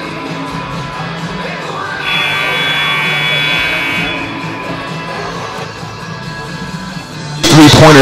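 Gym scoreboard horn sounding for about two seconds as the halftime clock runs out, a steady high tone over background music in the hall.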